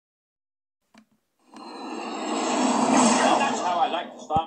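Film soundtrack played from a screen and picked up by a phone: a loud roar of noise swells in from about one and a half seconds in, with a voice breaking through near the end.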